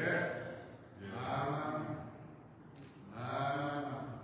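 A man's voice in three drawn-out phrases of about a second each, held on a steady pitch in a chant-like way rather than in quick speech.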